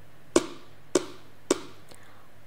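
Three sharp taps in a steady beat, a little over half a second apart, with a very faint fourth near the end.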